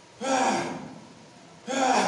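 A man grunting with effort on each bench-press rep: a short voiced, breathy exhalation twice, about a second and a half apart.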